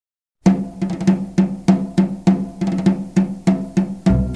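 Opening of a Mexican song recording: after half a second of silence, a drum starts a steady beat of evenly spaced strikes, about three a second.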